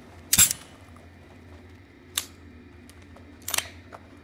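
Three short, sharp clicks, the first and loudest about half a second in and the others about two and three and a half seconds in, over a low steady hum.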